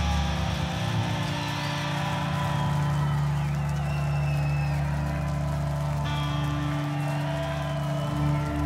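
Live metal band playing a passage of long, held chords with electric guitar, at a steady level.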